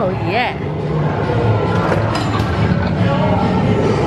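Amusement arcade din: a steady low drone of game machines, with a brief warbling voice-like sound in the first half-second and faint electronic tones a few seconds in.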